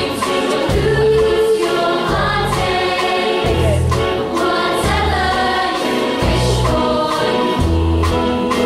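A choir singing a slow song over an accompaniment, with a low bass note sounding about every second or so.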